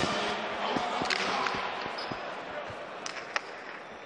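Jai alai pelota striking the fronton's front wall and floor during a rally: a few sharp, echoing knocks, the sharpest about three and a half seconds in.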